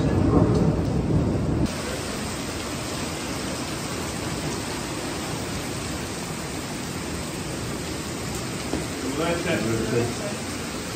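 Steady hiss of rain falling outside. A louder low rumble with a voice over it cuts off suddenly about two seconds in, and a brief voice is heard near the end.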